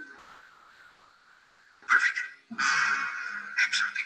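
Soundtrack of a played TV episode: music ends, and after a brief lull loud, high-pitched, voice-like cries break out about two seconds in, coming in broken bursts.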